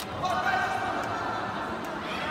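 Shouting voices ringing in a large sports hall around a karate kumite bout, with a couple of sharp knocks, one at the start and one near the end.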